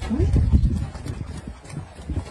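A short rising "mm?" from a woman, then low knocking and rubbing noises through the first second that fade toward the end.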